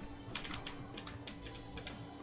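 Light keystrokes on a computer keyboard, a quick run of several taps through the middle.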